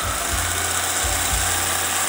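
Homemade Van de Graaff generator running at reduced speed: its motor-driven pantyhose belt, patched with copper-tape pieces, runs over the rollers with a steady rubbing hiss and a low motor hum.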